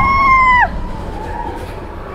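A rider's long, high scream on the Expedition Everest roller coaster, held steady and then breaking off with a falling pitch less than a second in, after which only the lower rumble of the ride remains.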